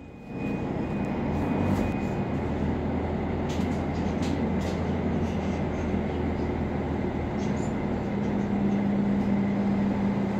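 Volvo B10BLE city bus's diesel engine and ZF automatic transmission heard from inside the passenger cabin while the bus drives, a steady running drone that swells in at the start. A few light rattles sound near the middle, and a steady hum tone joins the drone about seven seconds in.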